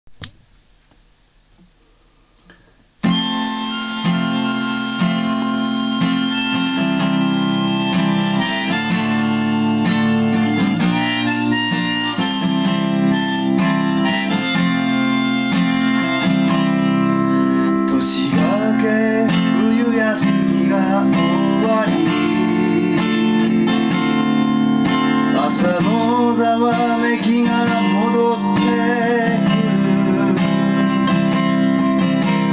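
Instrumental opening of a folk song: a Gibson Southern Jumbo acoustic guitar strummed in chords with a harmonica playing the melody over it. It comes in suddenly about three seconds in, after faint room noise.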